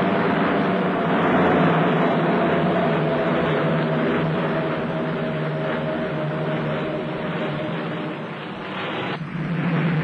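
Short Sunderland flying boat's four radial engines droning steadily as it runs across the water, slowly fading as it draws away. About nine seconds in the sound changes to a duller aircraft drone.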